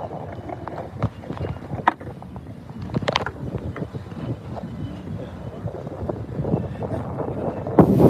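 Skateboard wheels rolling on a concrete sidewalk: a steady low rumble with sharp clicks as the wheels cross the joints. Wind buffets the phone's microphone.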